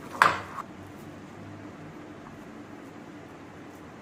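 A short, loud rush of noise about a quarter-second in, then a faint, steady low hum of room background noise, like a fan running.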